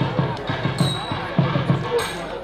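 Thavil drumming in a nadaswaram concert: deep strokes about four a second, with a few sharper, brighter slaps.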